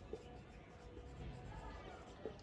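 Faint sound of a marker pen writing a word on a whiteboard.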